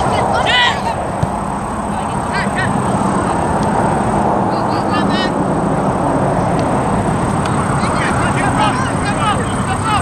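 Players and spectators shouting in short calls over a steady rushing background, with one sharp knock about a second in.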